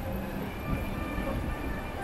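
Street ambience: a steady low rumble with a few faint held tones running through it.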